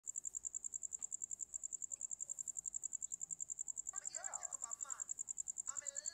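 A cricket chirping in a fast, even, high-pitched pulse, about eight or nine chirps a second. A voice speaks briefly about four seconds in.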